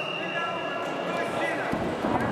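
Voices echoing in a large sports hall, with a dull thud near the end as the wrestlers come together on the mat.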